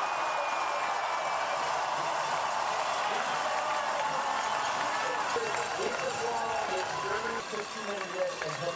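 Crowd of spectators in the stands cheering in a steady roar, with individual voices and shouts standing out in the second half.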